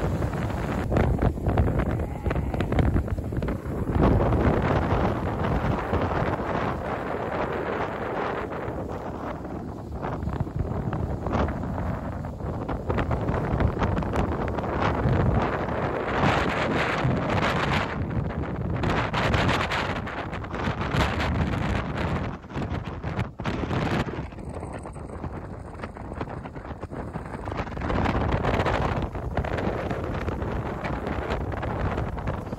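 Strong wind buffeting the microphone on the open deck of an icebreaker moving through drift ice, rising and falling in gusts, with the ship's running noise beneath it.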